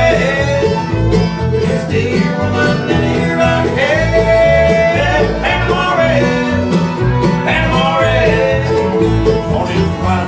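Bluegrass string band of fiddle, mandolin, acoustic guitar and upright bass playing an instrumental break between sung verses, with a steady pulsing bass under a melody that slides between notes.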